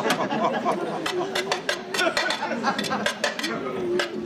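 A metal utensil tapping and scraping in a frying pan of eggs on a stove, many quick irregular clinks, over a woman's voice humming a wavering tune.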